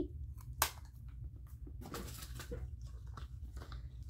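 Gift packaging being handled: light rustling and small clicks, with one sharp click about half a second in, over a steady low hum.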